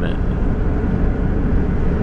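Steady noise of a van driving on a highway, heard from the open side of the vehicle: a dense low rumble of road and wind noise with a faint steady engine hum.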